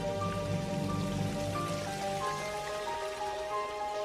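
Slow orchestral film-score music, a melody of long held notes, over a steady hiss, with a low rumble underneath that fades out about two and a half seconds in.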